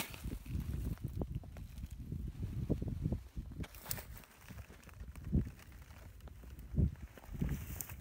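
Irregular low rumbling with a few soft thumps: wind and handling noise on a handheld phone's microphone outdoors.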